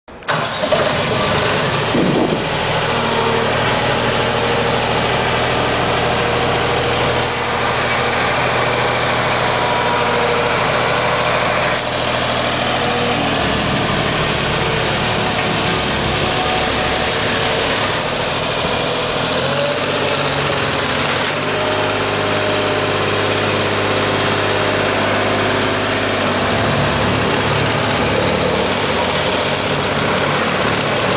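Ingersoll-Rand DD-32 tandem drum roller's diesel engine running steadily, its note shifting a couple of times as the machine is driven.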